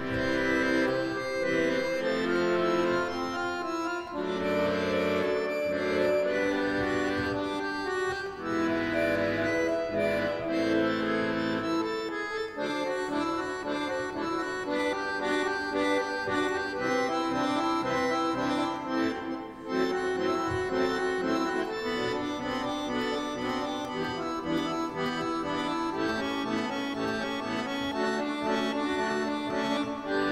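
Accordion music played live: sustained chords under a moving melody, with a brief drop in level about 19 to 20 seconds in.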